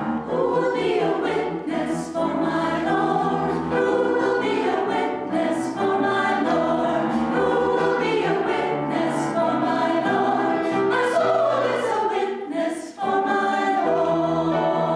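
A women's church choir singing together in sustained phrases, with a brief break between phrases near the end.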